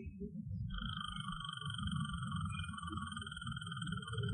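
A long, even trilled animal call starts about a second in and holds steady, over an uneven low rumble of recorder noise from a field recording made in the woods.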